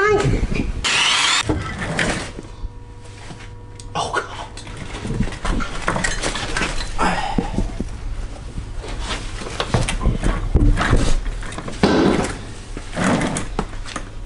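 A pickup's rear wheel and tire being taken off by hand in a shop: a run of short, noisy bursts and clunks as the lug nuts are worked loose and the heavy tire is pulled from the hub, over a steady low hum.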